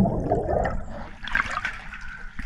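Water rushing, muffled as heard from underwater, then splashing and trickling as the microphone breaks the surface about a second in.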